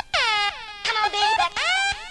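Mid-1990s club dance music from a DJ set: a synth riff of repeated stabs that each slide down in pitch, about three in two seconds, with little bass under them.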